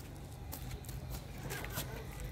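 Low, steady outdoor background rumble with faint scattered ticks, picked up on a handheld phone between spoken remarks.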